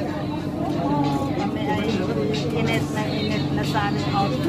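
Steady low hum of a moving elevated passenger train car, with people's indistinct voices over it.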